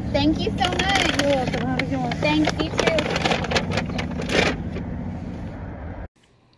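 An indistinct voice over the steady low hum of an idling car, heard inside the cabin.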